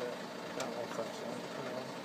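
Faint steady background noise with a few light clicks as the Vincent motorcycle is handled before being kicked over; its engine is not running.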